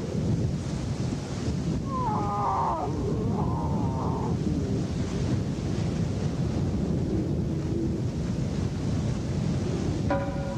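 Lion cubs mewing, several short, wavering calls about two to four seconds in, over a steady low rumble of wind noise.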